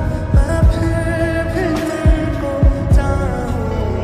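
Slowed-and-reverb lo-fi Hindi mashup music without lyrics: deep kick-drum hits land a few times a second or so apart over sustained keyboard or pad chords and a wavering melody line.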